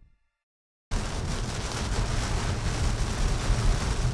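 Heavy rain beating on a car's windshield and body, heard from inside the cabin, with steady road and tyre noise at highway speed. It starts suddenly about a second in, after a moment of silence.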